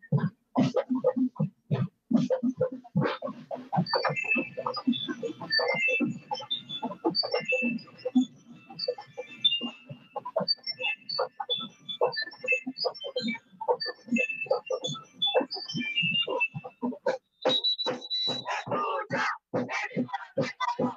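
School marching band playing a piece with its drum line beating a steady, fast rhythm on snare and bass drums. A high, ringing melody comes in over the drums from about four seconds in.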